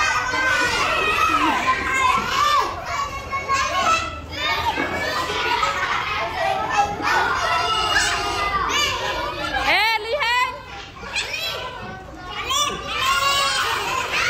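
A group of young children chattering and calling out over one another, their voices overlapping continuously, with one high-pitched squeal about ten seconds in.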